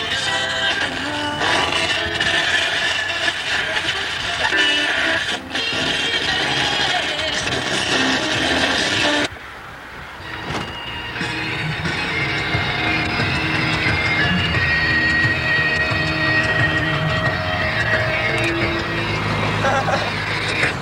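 Rock music playing on a car radio inside a moving car, over the engine and road noise of the car. The sound dips briefly about nine seconds in, after which the low road rumble is stronger under the music.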